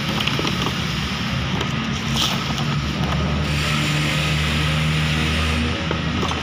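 A steady low machine drone, like a running engine, with rustling that grows louder about halfway through.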